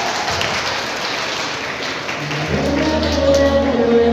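Audience applauding, then music with a steady bass line and melody comes in about two and a half seconds in.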